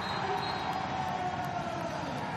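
Steady crowd and venue noise from a water polo match, an even wash of sound with no single event standing out.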